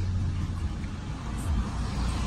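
Peugeot 208's 1.2 PureTech turbocharged three-cylinder petrol engine idling just after a push-button start, a steady low rumble heard from inside the cabin, swelling slightly about one and a half seconds in.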